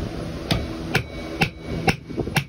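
A hatchet striking the top end of a wooden churn-stick shaft four times, about two blows a second, to drive the shaft into its wooden disc head resting on a wooden block: sharp wooden knocks.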